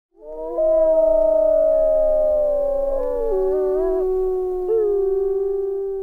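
Wolves howling, several long overlapping howls at different pitches that slide between notes, fading out near the end.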